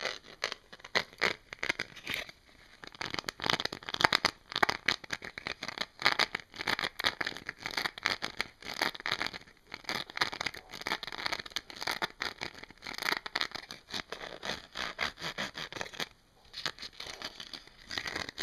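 Fingernails scratching and tapping quickly on a textured item covered in raised bumps, giving a dense run of small scratchy clicks with a brief pause near the end.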